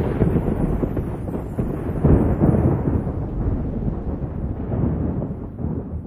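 A long, low, thunder-like rumble that slowly dies away once the song's music has stopped.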